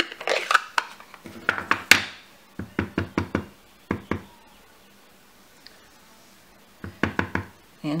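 Blending brush and plastic ink pad handled on a craft desk: light knocks and clicks as the pad is set down and opened, then a quick run of about six taps as the brush is dabbed into the ink. More light clicks follow near the end.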